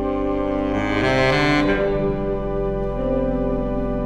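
Slow instrumental music: a saxophone playing a melody, with a brighter phrase about a second in, over sustained organ chords.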